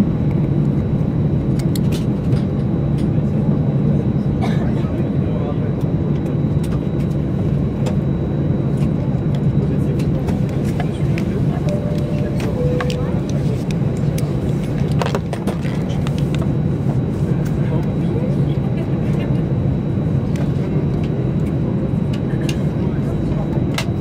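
Steady cabin hum of an Airbus A319-111 slowly taxiing onto its stand after landing, its CFM56 engines at idle and the air conditioning running, with a few light clicks.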